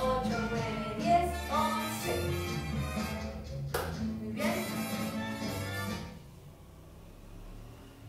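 Recorded danzón music playing, a melody over a steady bass, which ends about six seconds in and leaves only a quiet room.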